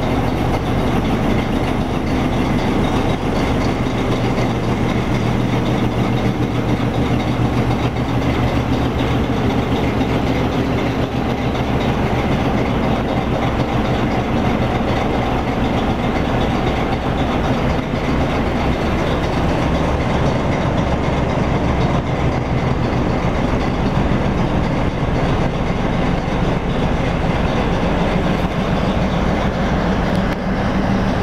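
Diesel locomotive engine running steadily as it hauls a train of open freight wagons slowly past, with the wagon wheels rolling over the rails. A deep engine tone grows louder near the end.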